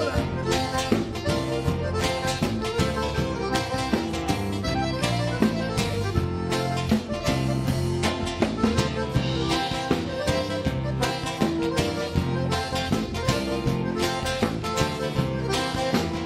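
Live band playing an instrumental passage: piano accordion with acoustic guitar, electric bass and drum kit keeping a steady beat.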